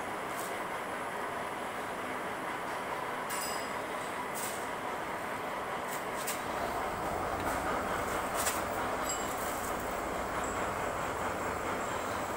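Pillar drilling machine running with a steady mechanical hum, which gets heavier partway through. Several sharp metallic clicks and knocks come from handling the drill chuck and feed handle.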